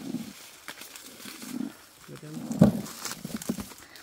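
Dry corn stalks and leaves rustling and crackling as they are pushed through and picked, with one sharp crack about two and a half seconds in, the loudest sound. Short, low vocal murmurs come and go.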